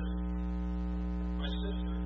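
Steady electrical mains hum, a low buzz with many evenly spaced overtones that does not change, dominating the sound, with only faint traces of a voice beneath it.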